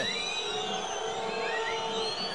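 Football stadium crowd noise: a steady din of the stands with several long held tones from fans' horns and whistles.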